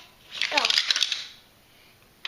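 A Hot Wheels die-cast toy car let go at the top of a playset tower, rattling and clattering down the plastic track for under a second.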